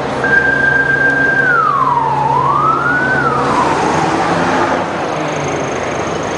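A single siren-like tone holds high for about a second, slides down, rises back and then falls away. Under it a city bus engine runs as the bus passes close by.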